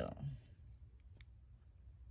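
Three or four faint, sharp clicks as a glass jar candle is handled and turned over in the hand, over a steady low hum. The end of a spoken word comes at the very start.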